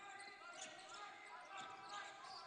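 Faint basketball court sound in a large, mostly empty arena: a ball being dribbled on the hardwood, with faint distant voices.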